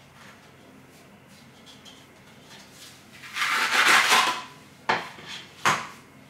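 Adhesive tape pads tearing away for about a second as a tablet is pulled off a wooden stand, followed by two short sharp knocks as it is handled.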